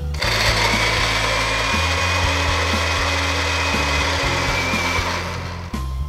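Moulinex electric blender running, pureeing mango pieces with sugar: it starts just after the beginning, runs steadily with a high whine, fades a little and cuts off about a second before the end.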